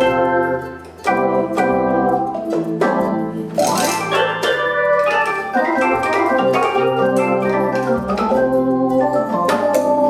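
Organ-voiced chords played on a MIDI controller keyboard and sounded by a Ketron MidJay sound module, with a brief drop in loudness about a second in. Sound coming from the module is the sign that the MIDI cable link works.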